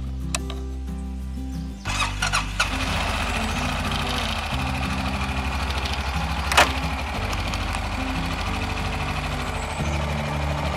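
Honda ATV engine starting about two seconds in, then running at idle with a rapid low pulse, under background music; one sharp click about six and a half seconds in.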